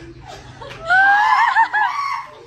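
Loud, high-pitched laughter starting about a second in: one rising squeal of a laugh that then wavers quickly up and down for about a second before breaking off.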